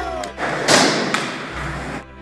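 A skateboarder falling hard on the ground: a heavy thud about two-thirds of a second in, then a lighter knock about half a second later, over background music.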